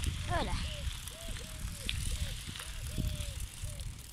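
Bicycle being ridden, with a short squeak that rises and falls in pitch, repeating about two to three times a second, over a steady rumble of wind on the microphone.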